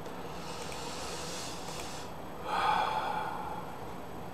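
A man breathing during a pause in speech: a faint, drawn-out intake of breath, then a louder, short breath out about two and a half seconds in.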